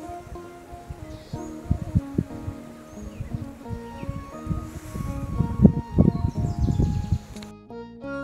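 Outdoor field sound of wind buffeting the microphone in irregular low gusts, heaviest in the second half, with soft background music underneath.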